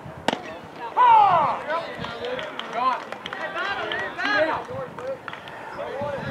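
A single sharp pop of a pitched baseball into the catcher's mitt, then a loud shouted call about a second in, followed by several voices calling out.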